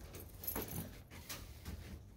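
A few light clicks and jingling rattles, spaced irregularly, with a room hush underneath.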